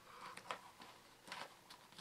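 Faint, scattered clicks and taps of small wooden blocks knocking together as the segments of a wooden snake cube puzzle are twisted and folded by hand.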